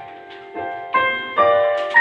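Piano introduction, a chord struck about twice a second, each one ringing and fading, growing louder from about a second in.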